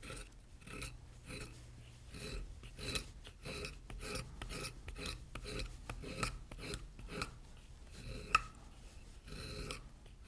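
A hand skiving blade shaving thin curls off the back of vegetable-tanned leather, in short scraping strokes about two a second, with one sharp click late on. The leather's edge is being thinned to about paper thickness so it can be folded over and glued.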